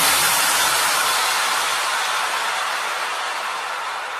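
White-noise sweep from an electronic dance remix, heard with the beat and melody dropped out: an even hiss that slowly fades, thinning out at the low end.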